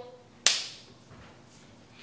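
A single sharp crack about half a second in, strongest in the highs and trailing off over about half a second.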